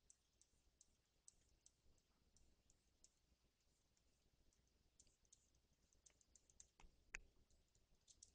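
Near silence with faint, scattered clicks of the computer input used to paint brush strokes, a few every second, thicker in the second half, the loudest about seven seconds in.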